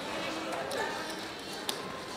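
Murmur of casino voices with sharp clacks of roulette chips being set down and stacked on the table, the loudest clack near the end.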